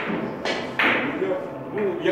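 Hard billiard balls knocking: a sharp clack at the start, another about half a second in and a louder one just under a second in, over men's voices in the hall.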